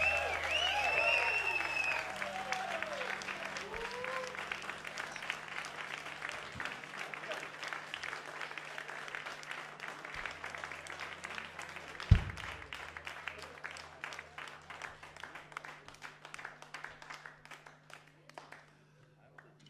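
Audience applauding at the end of a song, with cheers over the clapping in the first few seconds. The clapping thins out gradually to a few scattered claps near the end. A single low thump comes about twelve seconds in.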